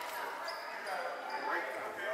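Echoing murmur of children's and adults' voices in a large gymnasium, with a few brief high squeaks.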